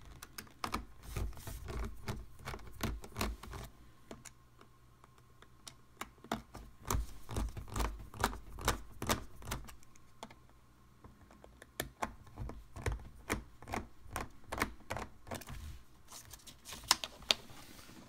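Precision screwdriver clicking and ticking as it turns small captive screws out of a MacBook's metal access bracket, in three runs of rapid clicks with short pauses between them.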